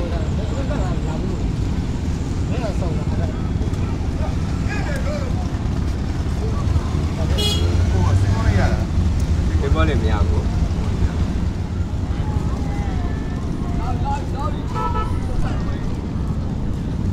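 Busy outdoor ambience: a steady low rumble with scattered voices talking, and a brief high-pitched tone about seven and a half seconds in.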